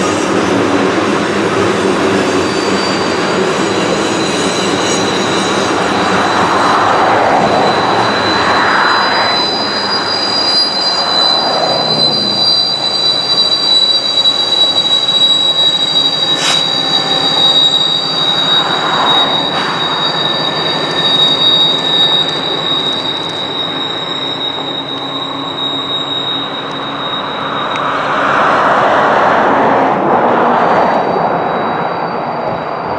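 A long string of loaded tank cars rolls around a tight curve, the wheel flanges giving a steady high-pitched squeal over the rolling rumble of the wheels. In the second half, the rear distributed-power GE ET44AH diesel locomotive adds its engine drone as it comes past, growing louder near the end.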